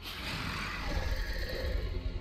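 Soundtrack of an animated fantasy series: background music under a steady low rumble of action sound effects.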